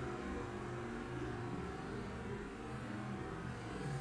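Steady low rumble of outdoor background noise with no distinct events, typical of distant traffic.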